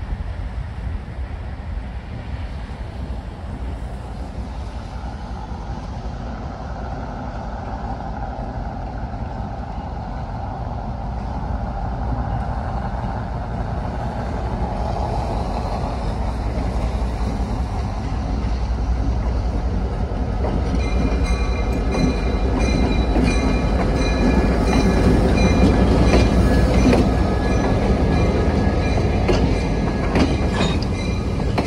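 A diesel freight locomotive approaches, its engine rumble growing steadily louder. From about two-thirds of the way in, train cars roll past close by, with wheels clacking over the rail joints and squealing on the rails.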